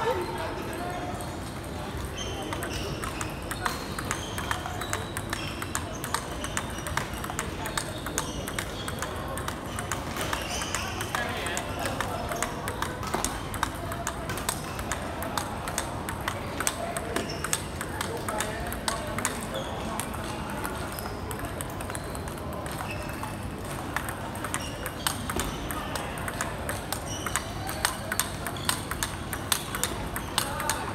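Table tennis ball clicking off the paddles and the table in a continuous rally, several hits a second, with voices chattering in the background.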